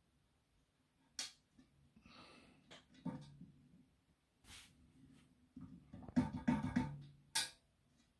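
A hand handling the round aluminium turntable plate: a few sharp clicks and short scrapes, with a low ringing hum from the metal plate under the louder stretches, the busiest part near the end.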